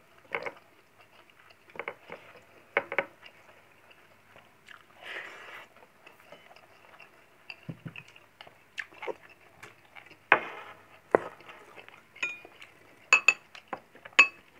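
Close-up eating sounds: a person chewing mouthfuls of rice eaten by hand, with scattered short clicks and soft knocks of fingers and plate. In the last couple of seconds a metal spoon clinks several times against a glass bowl, with a brief ring.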